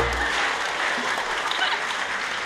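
An audience applauding just as the orchestra's final chord cuts off at the end of a musical number.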